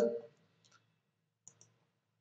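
Two short computer mouse clicks close together about a second and a half in, as a material is picked from a dropdown list; otherwise near silence.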